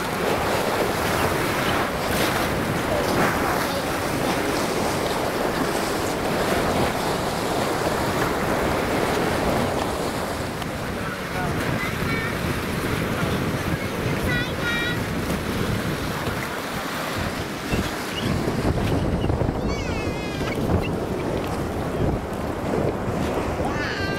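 Lake Michigan waves washing and splashing against a concrete breakwater, with wind buffeting the microphone, a steady rushing noise throughout.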